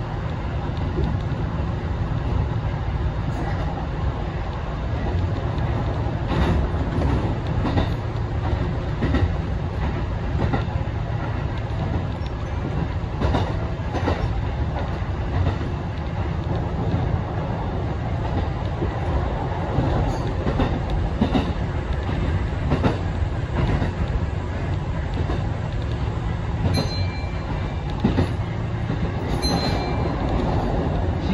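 Kintetsu 1400 series electric train running along the line, heard from inside the front car: a steady rumble of wheels and running gear, with wheel clicks over rail joints at irregular intervals.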